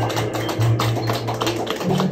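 Live jazz combo playing the closing bars of a ballad: an upright double bass holds low notes, stepping up to a higher note near the end, with scattered sharp taps over it.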